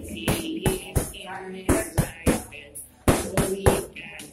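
Boxing gloves smacking in quick, irregular hits during sparring, about eight sharp blows, over music playing in the background.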